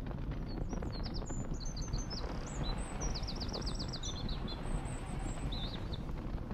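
Songbirds chirping and trilling over a steady low outdoor rumble; about three seconds in, one bird gives a fast run of repeated notes.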